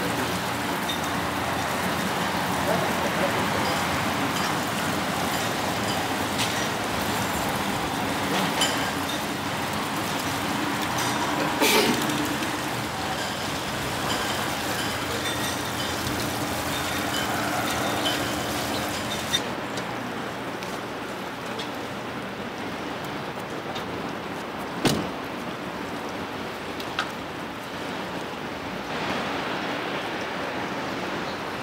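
Steady car and traffic noise with a hiss, as a car drives slowly through a parking lot, broken by a few short knocks, one about twelve seconds in and one about twenty-five seconds in.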